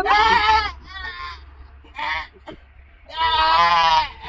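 A man wailing, a loud quavering cry that sounds almost like a bleat. It comes in bursts: one at the start, a short cry about two seconds in, and a long one from about three seconds in.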